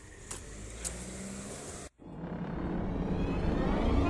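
Wheeled suitcases rolling along a pavement with a low rumble and a couple of sharp clicks. After a sudden break about two seconds in, a swelling sound rises steadily toward music.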